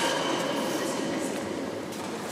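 Referee's whistle echoing away in a large indoor sports hall, its high steady tone dying out about a second in, over the hall's echoing background noise.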